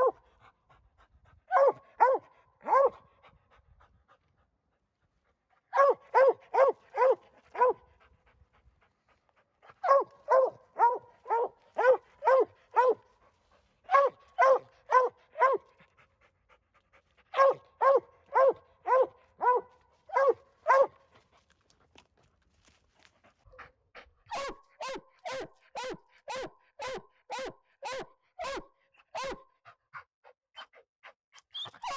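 Coonhound barking treed at the base of a tree, short barks in bursts of about four to six, two or three a second, with brief pauses between bursts and a steadier run of barks near the end: the sign that she has a raccoon up the tree.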